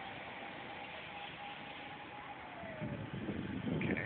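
Steady outdoor traffic noise, with a faint thin tone that holds and then slides down in pitch a little past halfway, and a louder low rumble building in the last second.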